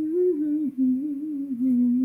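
A woman humming a wordless tune in her mid-range voice, in held notes that step up and down with a couple of brief breaks.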